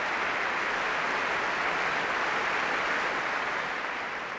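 Concert-hall audience applauding, a steady dense clapping that begins to fade near the end.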